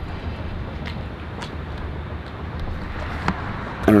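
Steady low outdoor background rumble, like distant road traffic or wind on the microphone, with a few faint clicks.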